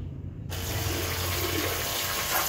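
Pressurised jet of water from a small solar-powered pump's hose nozzle, starting suddenly about half a second in and splashing steadily into a tub of rainwater.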